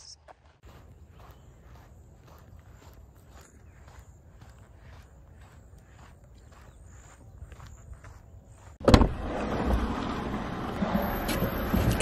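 Footsteps on a sandy trail, a steady walking pace of about two to three steps a second, over a faint steady high-pitched buzz. About nine seconds in comes a sudden loud thump, followed by a louder rushing noise for the last three seconds.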